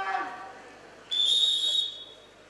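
Referee's whistle: one steady, shrill blast of just under a second, starting about a second in, signalling the start of a freestyle wrestling bout.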